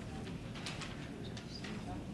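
Low background murmur of a seated audience in a hall, with a few faint, sharp clicks.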